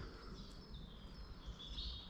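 Faint birdsong in woodland: high whistled notes, clearest about a second and a half in.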